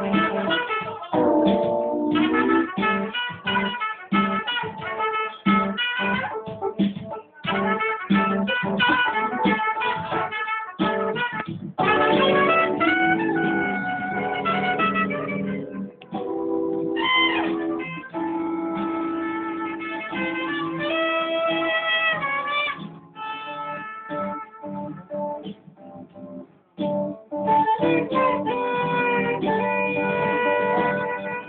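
Live instrumental music: a saxophone plays a melody of long held notes with bends, over a backing that has guitar in it.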